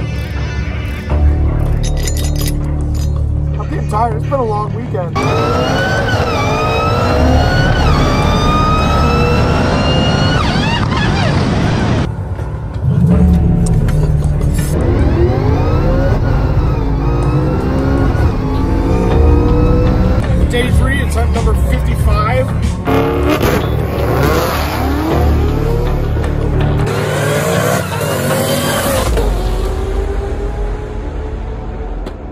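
Music with singing, mixed with a supercharged Mustang Cobra drag car's engine accelerating hard. The engine's pitch climbs and drops back several times, as at gear shifts.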